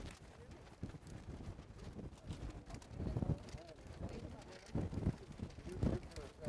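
Faint, distant voices of people talking in the background, with a low wind rumble on the microphone.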